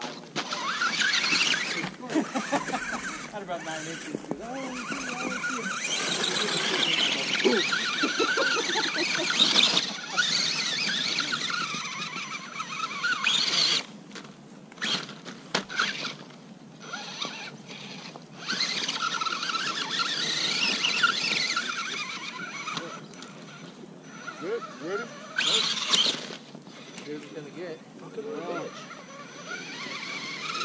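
Electric motor and gears of a scale RC rock crawler whining, rising and falling in pitch in spurts as the throttle is worked on a hill climb, with a few pauses.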